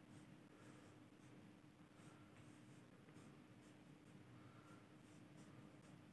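Faint marker-pen strokes on a whiteboard: short scratchy strokes with light squeaks, several per second, over a steady low hum.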